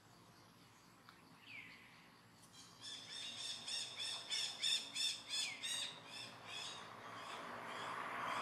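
A bird calling a quick run of repeated high notes, about three a second and loudest in the middle, starting about two and a half seconds in, with a single short falling note just before.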